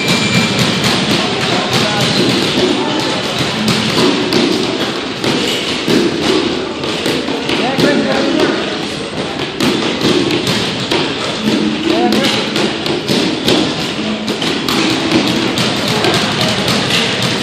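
Boxing sparring: gloved punches thudding and tapping on gloves and headgear and feet on the ring canvas, many irregular knocks, with voices in the background.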